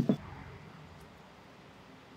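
Faint, steady background hiss from the outdoor recording, after a brief, abruptly clipped sound at the very start.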